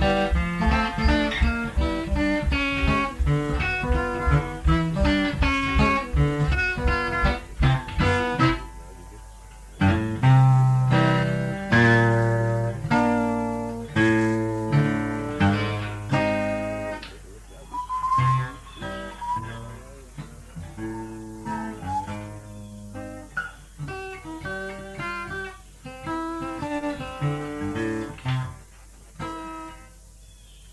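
Acoustic guitar played in a picked blues style: a quick, even pattern over steady bass notes for about eight seconds, a short break, then slower ringing notes and chords that thin out and stop just before the end.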